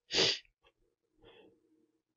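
A quick faint inhale followed by a short, sharp burst of breath noise from a man at a close microphone, then faint breathing about a second later.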